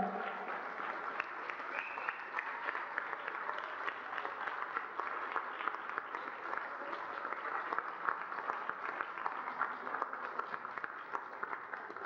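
Audience applauding: steady clapping of many hands.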